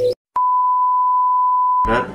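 A steady electronic beep, one high pitch held unchanged for about a second and a half, starting with a click after a brief dropout and cutting off abruptly.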